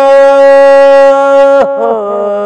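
A male singer's voice holds one long, steady note of a qaseeda, which breaks off about a second and a half in. A lower steady note begins just before the end.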